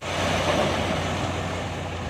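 JCB backhoe loader's diesel engine running steadily while its front bucket tips a load of gravel into a concrete well ring. The gravel pours and rattles down, loudest in the first second, then tails off.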